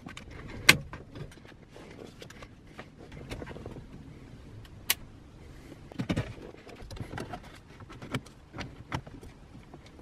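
Handling noise from refitting a car radio: a few sharp clicks of plastic and sheet metal as the metal-cased BMW Business CD head unit and its wiring are handled, then a run of clicks and scraping from about six seconds in as the unit is slid into its dash opening.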